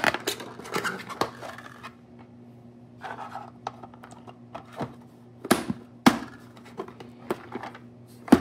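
Hard 3D-printed plastic box and lid being handled and the lid pressed onto the box, with light scrapes and scattered sharp clicks and knocks, the two loudest a little past halfway.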